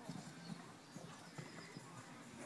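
Horse hoofbeats on grass turf: a few dull, irregular thuds.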